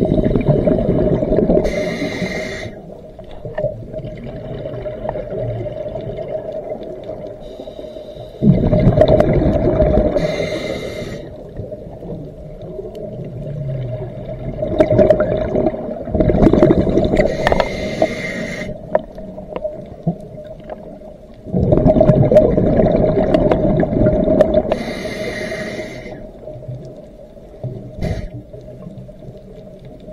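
A scuba diver breathing through a regulator underwater. Four bubbling exhalations, each a few seconds long, come roughly every seven seconds, with a hissing inhalation through the regulator between them. A steady hum runs underneath.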